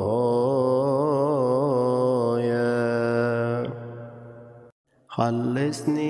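Slow melodic chanting with a wavering pitch over a steady low drone, settling into a held note that fades out about four seconds in; after half a second of silence the chant resumes on a steady held note.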